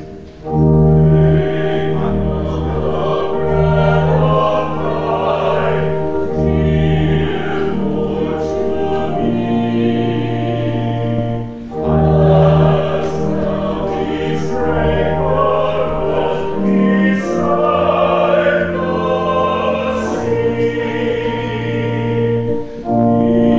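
Singers performing a slow hymn with organ accompaniment, held chords over a sustained bass line, with brief breaths between phrases just after the start and at about twelve seconds in.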